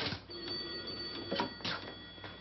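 Desk telephone bell ringing for about a second, then cut off, followed by the clicks of the receiver being picked up.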